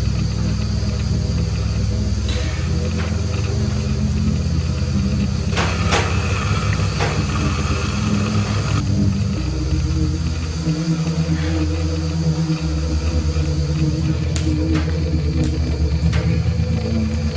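Dark film background music: a deep droning bass whose notes shift every second or two, with a few sharp hits over it.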